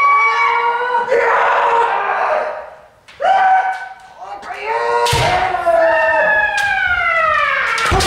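Kendo kiai: several practitioners yelling long, drawn-out shouts, one of them sliding down in pitch over the last three seconds. From about five seconds in come sharp cracks of bamboo shinai strikes and the thud of a stamping foot on the wooden floor.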